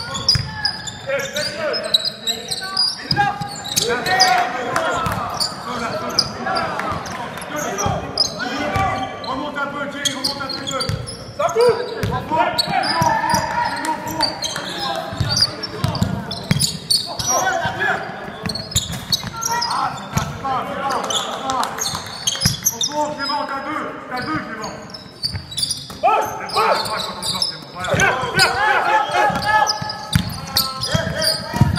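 A basketball bouncing on a wooden gym court during play, with players' and spectators' voices throughout, echoing in the large hall.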